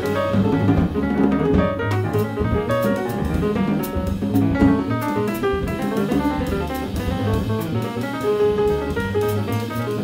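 Jazz piano trio playing: acoustic piano, double bass and drum kit, with dense piano notes over a low bass line and frequent cymbal strokes.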